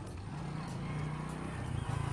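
Small motorcycle engine running at low speed as the bike is ridden slowly along: a steady low hum that starts suddenly.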